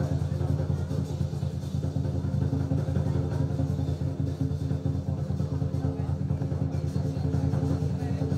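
Lion dance drum played in a fast, even roll: a continuous low drone with no separate beats.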